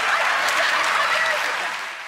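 Studio audience applauding, with a few voices underneath. The applause fades away near the end.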